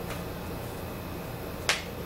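A single sharp click of a small hard object near the end, over a low steady hum.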